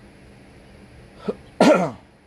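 A man coughs once, loudly and briefly, near the end, after a short throat sound just before it.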